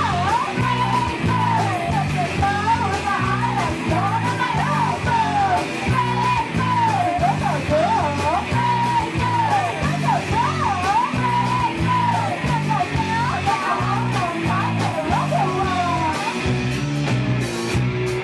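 Live punk band playing loud: electric guitar, bass and drums at a steady driving beat, with a wavering sung or lead line over it that stops about two seconds before the end.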